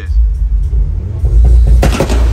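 Deep rumble of car engines in traffic under music, with one short sharp crack near the end.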